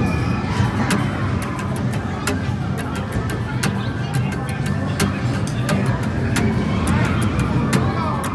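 Busy indoor amusement-center din: music and voices over a steady low rumble, with frequent sharp irregular clicks and a few gliding electronic tones.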